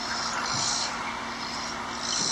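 Steady outdoor background noise with a faint hum, like distant street traffic, played back from a video through a speaker.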